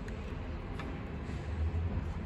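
Steady low background rumble, with a few faint ticks from handling.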